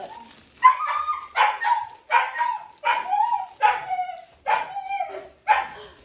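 Labradoodle puppy barking repeatedly during play, about seven short barks a little under a second apart.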